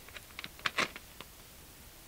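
A quick run of small sharp plastic clicks and crinkles, a bent juice-carton straw being straightened by hand, with one last click a little over a second in.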